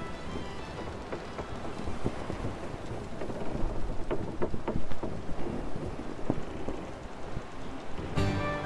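Storm ambience between music tracks: steady rain with thunder, swelling to its loudest about halfway through with a few sharp cracks.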